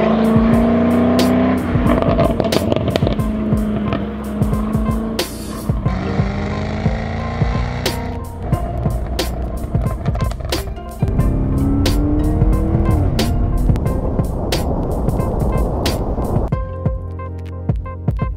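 Jaguar F-Type SVR's supercharged V8 engine and exhaust on the move, the engine note rising a few times, under background music with a steady beat. The engine fades out near the end, leaving only the music.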